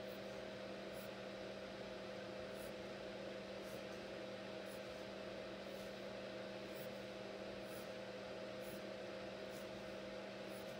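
Steady low hum and hiss of a quiet room, with faint light scratches of a pencil drawing short strokes on paper about once a second.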